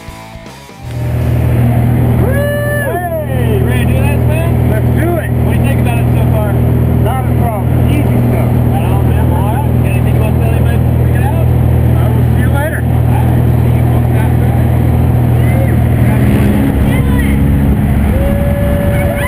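Cabin of a small high-wing, single-engine plane in flight: the piston engine's loud, steady drone, with voices shouting over it. Music ends about a second in, where the drone cuts in, and the drone's low note changes near the end.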